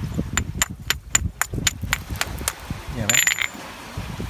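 A hard fragment knocking against oyster shells stuck to a beach rock: about ten sharp, clinking taps in two seconds, then a short scrape a little after three seconds.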